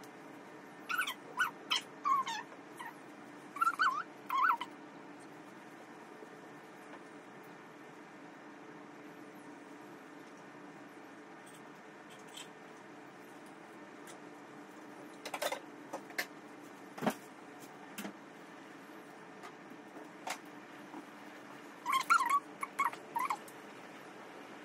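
Two bursts of short, high, pitched animal calls, one near the start and one near the end, over a steady low hiss, with a few sharp clicks in the middle.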